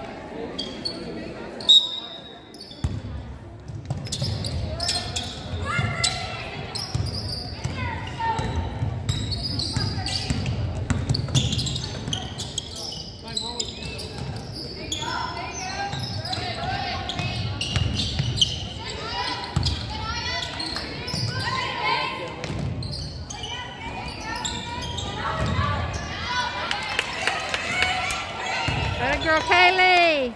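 Basketball game in an echoing gym: a ball bouncing on the hardwood court amid scattered shouts and calls from players and spectators, with one sharp knock about two seconds in.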